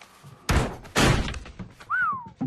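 Cartoon sound effects: two heavy slamming thuds about half a second apart, then a brief tone that rises and falls near the end.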